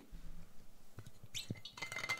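Insulated metal water bottle handled close to the microphone: a few faint clicks and clinks, then a brief scraping rustle with a short metallic ring near the end.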